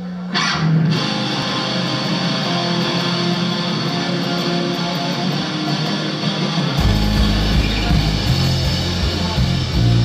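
Live rock band starting a song: electric guitars play alone at first, then the bass and drums come in heavily about seven seconds in.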